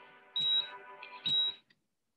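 Closing sound of a film trailer soundtrack: two short high electronic beeps, about a second apart, like a hospital heart monitor, each with a low thump, over a faint held music chord. The sound cuts off suddenly near the end as the trailer finishes.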